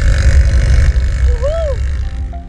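Riding noise on a Honda Pop 110i motorcycle at road speed: wind buffeting the handlebar camera's microphone as a loud, low, steady roar. About one and a half seconds in, a short voice sound rises and falls in pitch.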